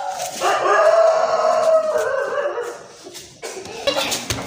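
A cat yowling: one long, drawn-out call of about two seconds that sags slightly in pitch, then a second, quieter call starting near the end.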